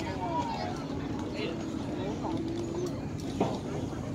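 Voices of players and spectators talking at a distance over a steady outdoor background, with one sharp knock about three and a half seconds in.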